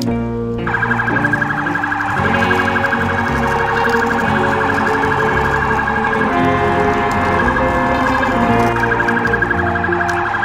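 Electronic siren with a fast warble, starting about half a second in and running on, over background music.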